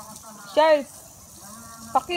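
A short wordless vocal call from a person, about half a second in, rising and then falling in pitch, over a faint steady low hum.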